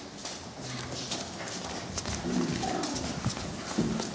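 Pulis trotting on a hard tiled floor: a busy run of claw clicks on the tiles, mixed with the handlers' footsteps.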